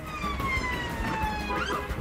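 Police car siren sounding one long wail that falls steadily in pitch over about a second and a half.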